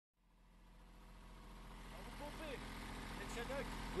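A sailboat's inboard engine running steadily under way, fading in over the first two seconds, with faint voices over it near the end.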